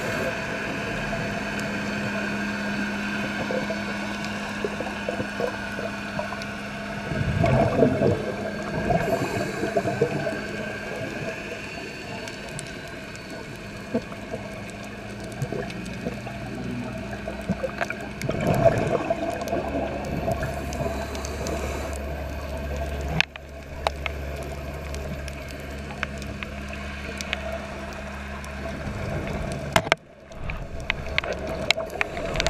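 Underwater sound through a dive camera's housing: a steady low hum with scattered sharp clicks, and twice a loud rush of a scuba diver's exhaled bubbles, about seven and eighteen seconds in.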